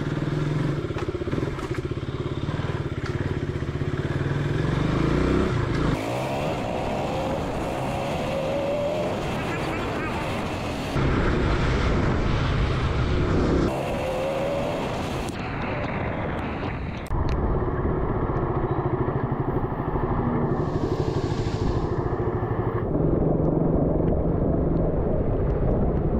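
KTM RC 200's single-cylinder engine running as the motorcycle rides at low speed through town streets, with the sound shifting suddenly several times.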